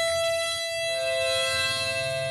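Mahogany harmonica holding one long steady note, with a lower note joining it about a second in to sound as a two-note chord: the closing held note of a tune.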